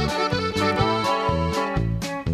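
Instrumental introduction of a norteño song: a button accordion plays the melody over bass notes stepping in a steady rhythm, with no singing.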